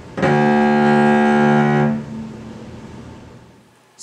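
Cello bowed on the C string, playing one long low D, the first note of the D major scale, held for nearly two seconds before the bow stops and the note rings away.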